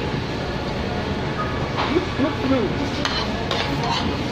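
Steady din of a busy restaurant with a few light clinks of a spoon and fork against plates, and a voice briefly in the background about halfway through.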